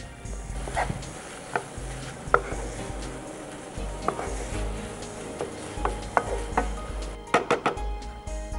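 Wooden spatula stirring noodles and shredded cabbage in a non-stick frying pan, with scattered light knocks against the pan and a quick run of them near the end.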